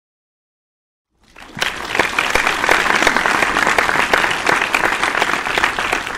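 Audience applause, cutting in suddenly about a second in after total silence and holding steady.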